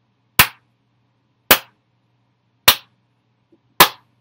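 One person's slow clap: four single hand claps about a second apart.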